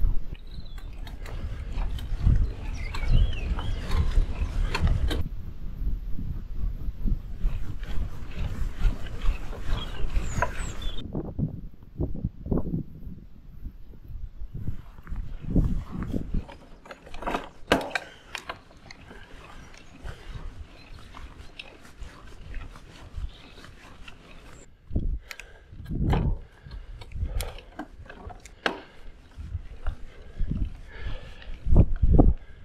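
A cyclist breathing hard while pedalling up a long, tough climb, with wind rushing over the camera microphone. The wind noise is heavier in the first half; after that, separate breaths come through in short irregular puffs.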